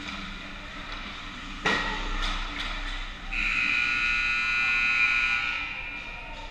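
The sharp crack of puck and sticks on the ice about a second and a half in, followed by a few lighter clicks. Then a long, shrill referee's whistle blast of about two seconds that stops play.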